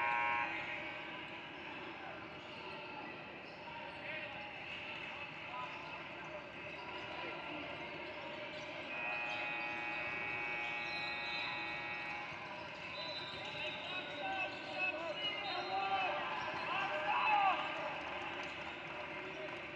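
Basketball gym during a game: a basketball bouncing on the hardwood court amid voices and the echo of a large hall. A steady, evenly pitched tone holds for about three seconds near the middle, and there are louder knocks and shouts near the end.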